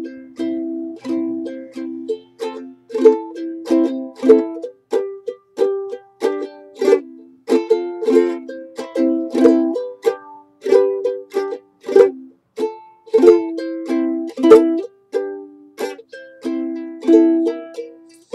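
A solo ukulele strummed in a steady rhythm of chords, an instrumental passage with no singing.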